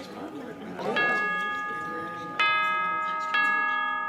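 Music: three struck bell-like chimes, about a second in, near the middle and shortly after, each ringing on and overlapping the next. Before the first chime there is a faint voice.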